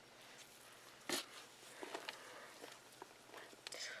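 Faint rustling and crackling of shredded-paper and leaf bedding in a worm bin as a gloved hand pushes worms back into it, with one sharp click about a second in.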